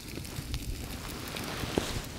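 Bacon frying in a pan over an open wood fire, with scattered small crackles and pops over a low steady rumble.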